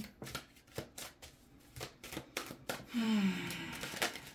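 A deck of cards being shuffled by hand, overhand, the cards slapping against each other in a run of short irregular clicks, about three a second, stopping about three seconds in.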